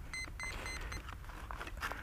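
About four short electronic beeps at one steady pitch from the model aircraft's onboard electronics, coming quickly one after another in the first second as the 4S battery is connected. They are the power-up tones of the powered system. Faint handling noise runs under them.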